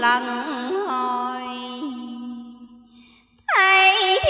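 A woman's voice sung-reciting Vietnamese verse in a slow, drawn-out chant. Her line bends through a few ornamented notes, settles on one long held note that fades away about three seconds in, and a loud new held tone starts just before the end.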